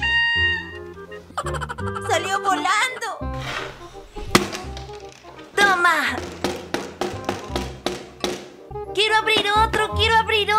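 Background children's music, with a run of short sharp clicks from a plastic clownfish toy being handled and worked, starting a few seconds in and running for about five seconds.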